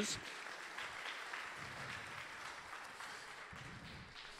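Audience applauding: a steady, fairly soft clapping that eases off slightly toward the end.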